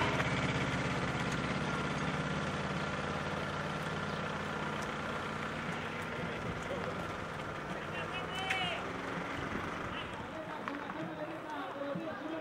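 A vehicle engine running with a steady low hum that fades away over the first several seconds, under street ambience with faint voices. A few short calls come later.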